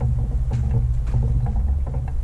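Steady low rumble of wind buffeting the camera microphone while walking, with faint footsteps on a dirt trail about twice a second.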